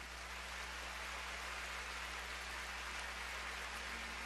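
Steady arena crowd applause heard at low level through the broadcast as a pair's figure skating program ends, with a faint constant electrical hum underneath.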